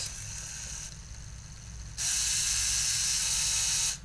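LEGO Mindstorms EV3 medium motor running a programmed sequence. First comes a soft whir as it turns one rotation and then a slower half turn back. About two seconds in, it switches to a louder, steady gear whine at full speed for two seconds, which cuts off sharply.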